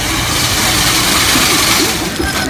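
Chain link fence weaving machine running: a steady, even hiss of machine noise with a low hum underneath.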